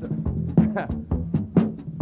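Live band vamping a funk groove: drum hits about four a second over a steady bass line.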